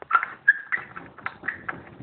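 Chickens giving a few short, high calls amid sharp clicks and knocks from the phone camera being handled.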